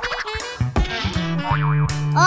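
Cartoon boing sound effect with a quickly wobbling pitch, over bouncy children's background music.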